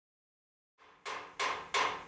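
Sharp percussive strikes, evenly spaced at about three a second, starting about a second in out of silence, each with a short ringing decay.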